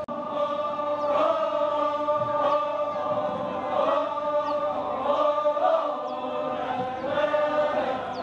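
A group of voices chanting together in long held notes that glide slowly up and down, Toraja funeral chanting at a Rambu Solo ceremony.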